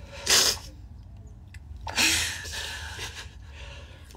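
A man sobbing: two sharp, breathy sob-gasps, one about half a second in and another about two seconds in, over a low steady hum.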